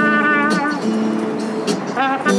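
Trombone playing a melody of sustained notes, some with a wavering pitch, over a strummed acoustic guitar.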